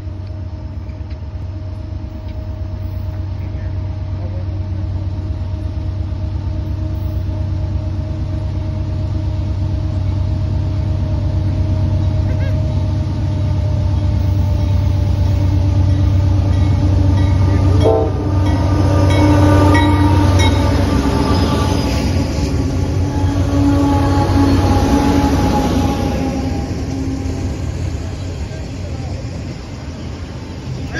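Norfolk Southern double-stack intermodal freight train approaching and passing, its diesel locomotives' low rumble building steadily. From a little past halfway, the locomotive's multi-chime horn sounds for several seconds, dropping slightly in pitch as it goes by, then the container cars roll past as the sound eases off.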